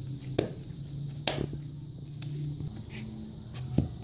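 Oiled hands kneading soft dough in a bowl: several short, soft slaps and squishes a second or so apart.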